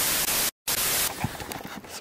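Television static hiss used as an editing transition, in two loud bursts split by a brief dead silence about half a second in. The hiss stops about a second in, giving way to quieter background noise with a few faint clicks.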